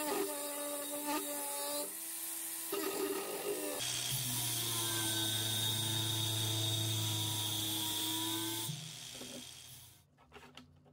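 Cordless angle grinder with an abrasive disc grinding the steel of an old hand-saw blade, a steady motor whine whose tone shifts a couple of times as the disc presses on the metal. It stops and winds down about a second before the end.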